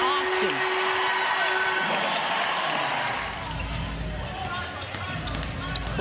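Arena sound of a professional basketball game in play: crowd noise with the court sounds of the ball bouncing and sneakers on the hardwood. A steady held tone sounds over the first two seconds, and the sound turns deeper and fuller about halfway through.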